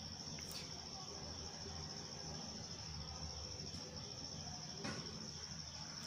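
Faint steady background with a thin high-pitched whine and a low hum, and a couple of soft clicks.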